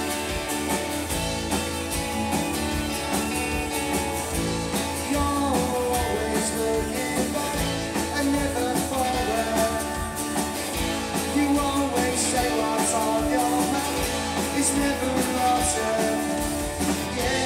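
A Britpop-style indie rock band playing live: electric and acoustic guitars, bass and drums, with a lead vocalist singing over them.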